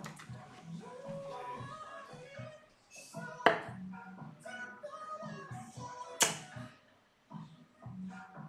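Two darts hitting a dartboard, each a single sharp thud, about three seconds apart; the second is the louder.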